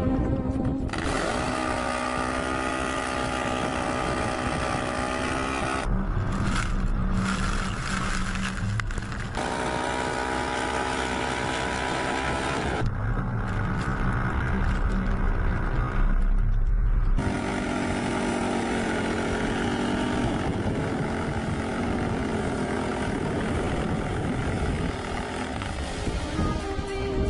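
Can-Am ATV and Ram Power Wagon pickup engines running at high revs under load as they pull against each other on a tow rope. The sound changes abruptly several times, at each cut between camera shots.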